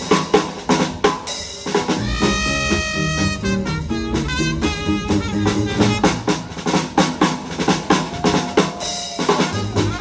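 A small live swing-jazz band playing an instrumental passage, with the drum kit's snare, bass drum and rim hits to the fore over upright bass, guitar and horns. A long note is held about two seconds in, and another near the end.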